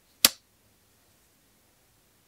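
A single short, sharp click, about a quarter second in, from fingers handling a small green plastic part; after it there is only faint room tone.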